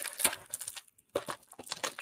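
Sweet packaging being handled: plastic crinkling and tearing in short, uneven crackles.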